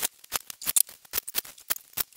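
Cordless drill driving screws into metal angle brackets in a rapid run of short, sharp bursts, several a second.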